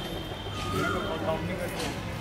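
An animal call in the background, a short held call about half a second in, one of a series repeating every couple of seconds, under a few words of speech.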